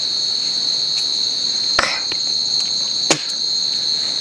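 Steady, high-pitched insect chorus, with two sharp clicks, one a little under two seconds in and one about three seconds in.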